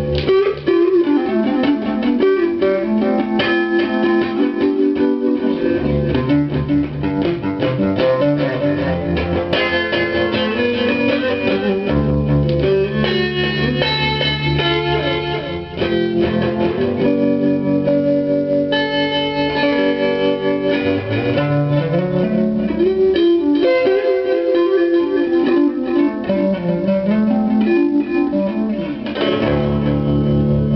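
Electric guitar played through a Kasleder Mr. Kite pedal and a Boss DD-3 digital delay into a Marshall combo amp: sustained notes and running lead lines, with a slide up in the low notes about two-thirds of the way through.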